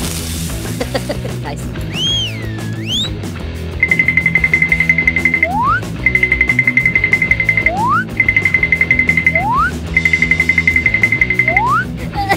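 Background music with a steady low accompaniment. About two seconds in there is a swooping whistle, and then a high warbling trill plays four times, each over a second long and ending in a quick upward slide.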